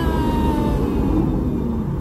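Steady wind and road rumble inside an open-top BMW convertible driving at speed, with the wind buffeting the microphone. A voice's long falling call fades out in the first second.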